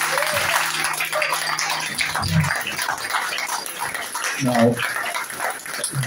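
Audience applauding and cheering after a guitar piece ends, with a couple of short calls or voices partway through.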